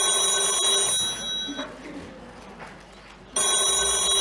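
Push-button desk telephone ringing: one ring of about a second, a pause of about two seconds, then the next ring starting near the end.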